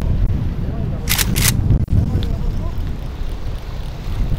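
Strong wind buffeting the microphone on an open boat deck, over the low rumble of the boat and choppy sea. There are two short hissing bursts a little over a second in.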